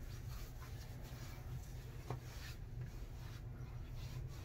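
Hands rubbing aftershave balm into the skin and beard of the neck and face: a faint, soft rubbing over a steady low room hum.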